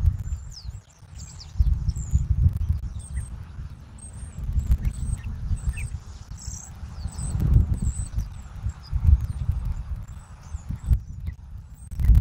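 Wind buffeting an outdoor microphone in uneven, rumbling gusts, with birds giving many short, high chirps over it.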